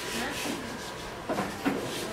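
Faint speech in a few short phrases over a steady low background hiss.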